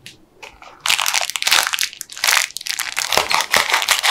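Clear plastic bag crinkling loudly as it is handled, with a couple of light clicks before the crinkling starts about a second in.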